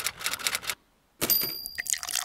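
Typewriter sound effect: a run of rapid key clicks, a short pause, then more clicks over a high steady ring.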